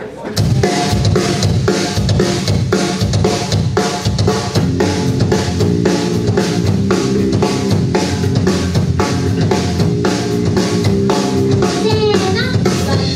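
Live rock band starting a song about a third of a second in: drum kit keeping a quick, steady beat under electric bass and electric guitars.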